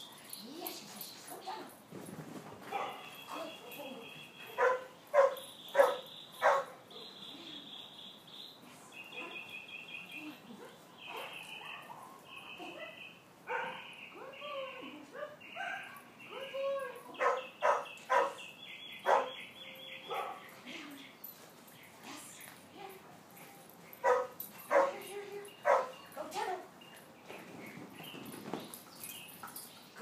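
A dog barking in short runs of several quick barks, with pauses between runs.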